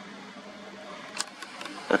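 Faint steady background hiss with a single sharp click about a second in and a few lighter ticks after it: handling noise from a zoom camera being panned and refocused.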